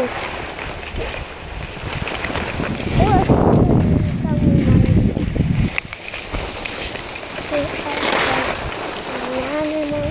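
Wind noise on the microphone and skis sliding over packed snow during a beginner's run down a ski slope, heaviest from about three to six seconds in. A short exclamation, 'Oh!', comes about three seconds in.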